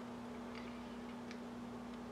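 Quiet room tone: a steady low electrical-sounding hum with two faint ticks.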